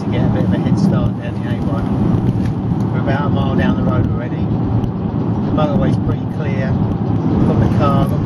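Car cabin noise on the move: steady engine and road rumble, with indistinct voices over it at times.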